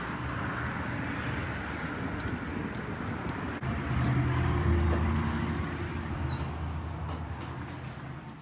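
Steady background traffic noise with a motor vehicle's engine rumbling, loudest around the middle and then easing off, with a few faint high chirps.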